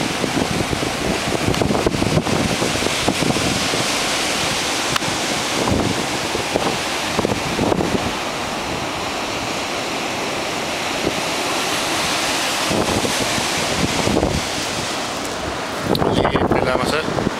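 Rough sea surf breaking and washing up the beach, with strong wind buffeting the microphone in gusts.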